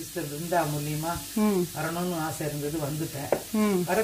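Grated coconut cooking in a non-stick pan and being stirred with a wooden spatula: a steady faint sizzle under a woman talking, with one sharp click of the spatula against the pan about three-quarters of the way in.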